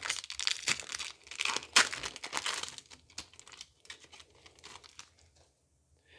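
Foil wrapper of a Pokémon Scarlet & Violet 151 booster pack being torn open and crinkled by hand. The crackling is loudest over the first three seconds, then thins to fainter rustling that dies away near the end.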